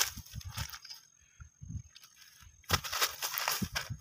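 Dry grass and plastic litter crackling and rustling as a fish is handled on the ground: scattered crackles in the first second, then a louder, denser crackling stretch in the last second or so.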